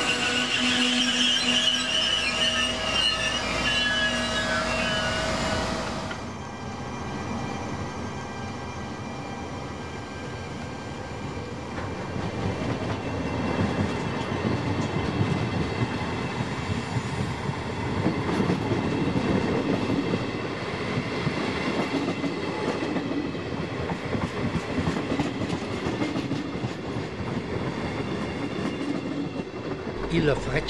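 Locomotive-hauled regional passenger train at a station: for the first few seconds it gives off high, steady squealing tones. After a sudden change about six seconds in, a rail rumble with wheel clatter builds, loudest around two-thirds of the way through.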